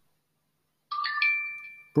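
A pronunciation-practice app's short success chime: a bright, rising chime about a second in that rings on briefly and fades. It signals that the spoken word was scored as correctly pronounced.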